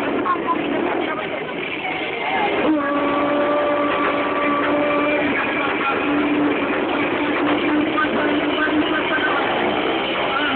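Motorcycle engine held at steady high revs for a few seconds, over the chatter of a crowd.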